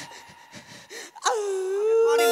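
A man gasping and then wailing into a stage microphone: short breathy gasps, then about a second in a loud crying wail that drops in pitch and is held.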